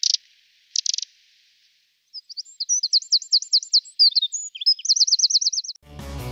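Eurasian wren: two short, sharp calls, then from about two seconds in a fast song of high, varied notes that ends in a rapid, even trill of about ten notes a second.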